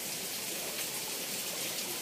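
Steady rushing of running water, an even hiss with no breaks.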